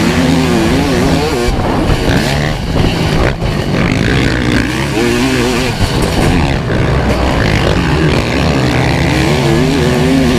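Kawasaki KX500 two-stroke single-cylinder engine racing at full song, heard from on the bike. Its note rises and falls constantly with the throttle through the turns, with a brief drop about three seconds in.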